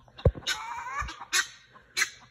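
Guinea fowl calling: one harsh, rasping call about half a second in, followed by short, sharp calls. A low thump comes just before the first call.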